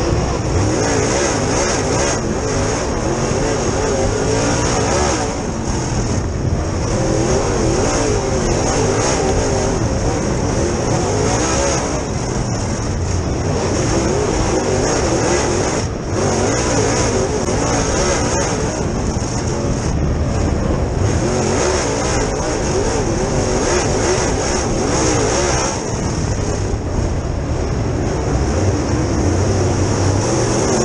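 Super Late Model dirt race car's V8 engine at racing speed, heard from inside the cockpit. Its pitch rises and falls as the throttle comes on and off through the turns, with a brief dip about every four to six seconds.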